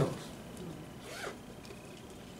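Pause between spoken phrases: quiet room tone with a few faint, brief rustling noises.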